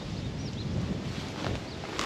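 Outdoor rural background with wind noise on the microphone, and a few faint high bird chirps.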